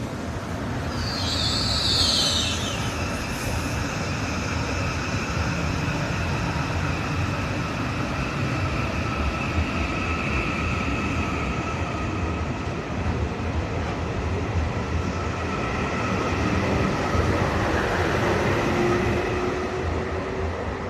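Flytoget electric airport express train pulling out of the platform and picking up speed, with a steady rumble and a faint electric whine. A brief high wheel squeal comes about a second in, and near the end a low whine rises in pitch as the train accelerates away.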